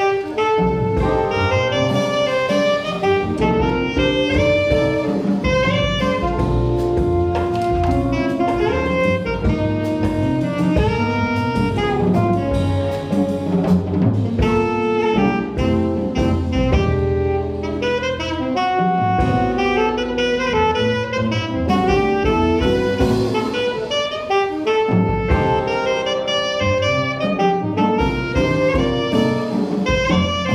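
Live jazz quartet playing: alto saxophone takes the melody over archtop guitar chords, walking upright bass and drum kit with ride cymbal.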